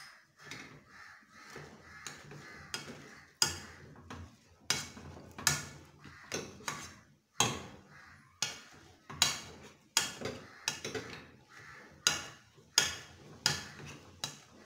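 Metal potato masher pushing through soft boiled potatoes and butter, knocking against the bottom of the pot in a steady rhythm of roughly three strikes every two seconds.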